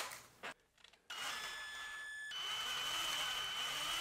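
Small electric drill running steadily with a thin high whine as it drills out a rivet in a diecast toy van's metal base. It starts about a second in, and its pitch shifts slightly a little after two seconds.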